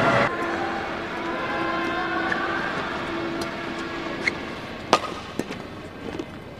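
Badminton hall ambience: a burst of crowd noise at the very start drops to a murmur over a steady held tone. About five seconds in comes a sharp crack of a racket striking the shuttlecock as a rally begins, followed by a few lighter ticks.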